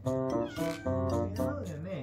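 A domestic cat meows, a wavering, gliding call in the second half, over background music.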